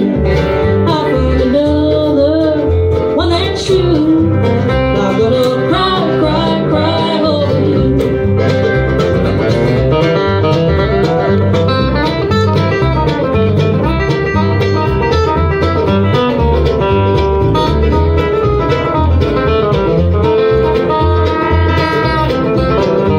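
Live bluegrass band playing: acoustic guitars, mandolin, fiddle and upright bass together, with gliding bowed or sung notes in the first few seconds and quick picked notes after.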